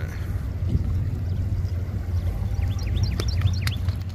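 Small birds chirping, with short quick falling calls that come mostly in the second half, over a steady low rumble.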